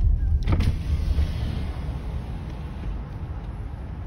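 Car moving slowly, heard from inside the cabin: a low engine and tyre rumble that grows quieter as the car slows.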